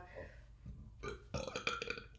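A person belching: one rough, rasping burp about a second in, lasting nearly a second.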